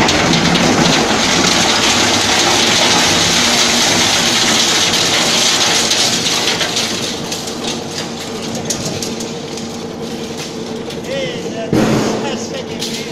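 Twin-shaft metal shredder tearing up metal paint buckets: a loud, dense crunching and clattering of metal over the steady hum of the drive motor and gearbox. The shredding is heaviest in the first half and eases off after about seven seconds.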